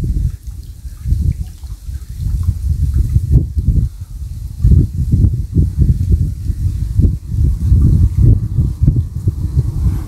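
Wind buffeting the phone's microphone: a low, uneven rumble that rises and falls in gusts.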